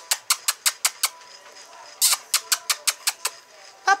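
Two quick runs of sharp mouth clicks, like kissing noises made to call puppies, about six to seven a second. The first run comes at the start and the second begins about two seconds in.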